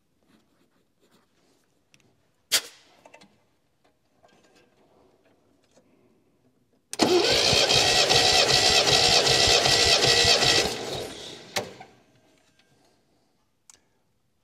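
MGB four-cylinder engine turned over by its starter for about four seconds without firing, throttle held wide open, during a compression test: a steady, even rhythm of compression strokes. A sharp click comes a few seconds before the cranking, and another just after it stops.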